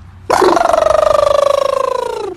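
A husky's single long howling vocalization, starting about a quarter second in and held for about two seconds, its pitch sliding slowly downward with a rough, rapidly pulsing edge.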